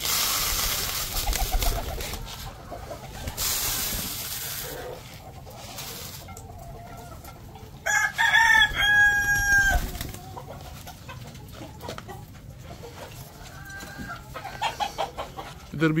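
Mixed grain poured from a plastic tray into a plastic chicken feeder, a rattling hiss in two pours during the first five seconds. About eight seconds in, a rooster crows once, loudly, for about two seconds.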